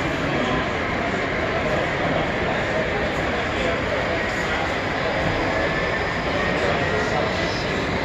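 Steady crowd chatter of many people talking at once in a large, echoing exhibition hall.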